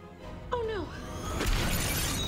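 TV episode soundtrack: dramatic score with a shattering, crash-like sound effect that starts about one and a half seconds in.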